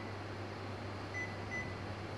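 Touch-control key beeps from an Elica EPBI WD 22L Vetro BK warming drawer: a few short, high beeps about every half second as the minus key is pressed to step the food-warming temperature down. A steady low hum runs underneath.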